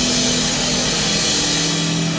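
Live rock band playing loud: a dense distorted wash of guitar and cymbals with a few low notes held steady.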